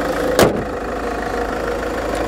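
Land Rover Freelander 2 SD4's 2.2-litre four-cylinder turbodiesel idling steadily, with the bonnet slammed shut in one loud thump about half a second in.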